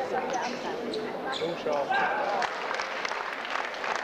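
Table tennis ball clicking back and forth off the bats and the table in a rally, with spectators' voices in the hall.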